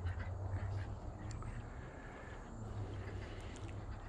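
Ducks quacking faintly in the distance over a low, steady rumble.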